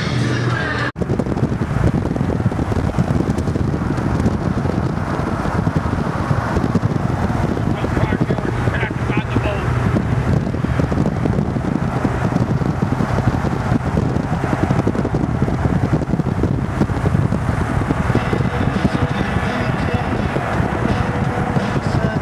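Steady wind rush on the microphone mixed with road and engine noise from moving traffic, recorded through an open car window.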